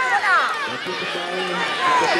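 Crowd of football spectators talking and calling out, many voices overlapping, with a few shouts falling in pitch.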